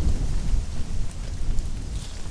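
Wind buffeting the microphone: an uneven low rumble that rises and falls throughout.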